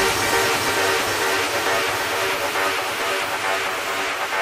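Trance music in a breakdown: with the kick drum and bass line dropped out, sustained synthesizer pad chords hold over a wash of noise.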